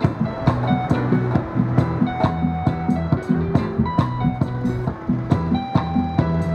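Live reggae instrumental passage without vocals: a keyboard plays over a low bass line while a drummer strikes a set of round drums with sticks, keeping a steady beat.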